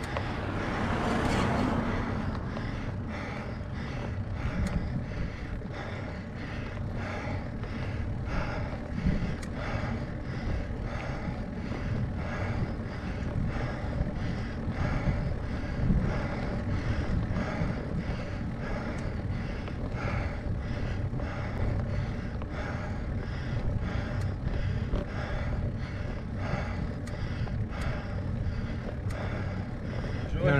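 A car passes the climbing cyclist in the first couple of seconds. After that the rider breathes hard and rhythmically, about once a second, as he labours up a steep gradient, over a low steady rumble.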